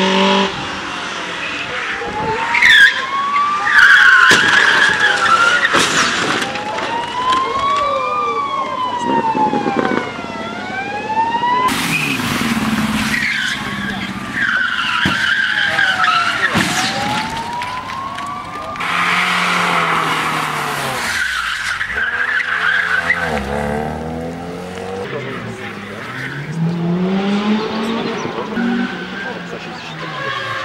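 A rally car driven hard through tight turns. The engine revs rise and fall again and again as the driver lifts off and gets back on the throttle. The tyres squeal in slides several times.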